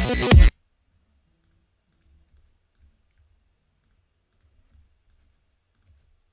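Glitched electronic synth bass loop, the same MIDI line chopped together with an octave-shifted copy, playing back loud and stopping abruptly about half a second in. Then near silence with a few faint clicks.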